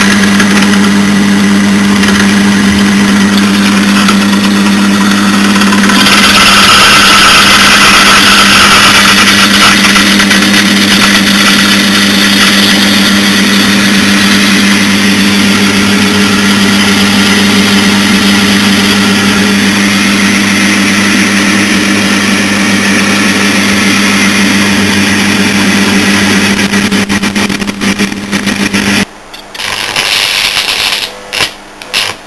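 Metal lathe running with a steady motor hum while a large twist drill in the tailstock cuts into a spinning steel bushing; the cutting noise grows louder about six seconds in as the drill bites. Near the end the lathe sound stops and stick-welding arc crackle begins.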